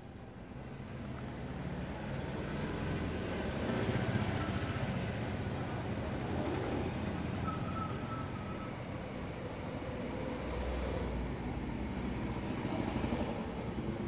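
Low, steady motor-vehicle rumble, swelling over the first couple of seconds and then holding.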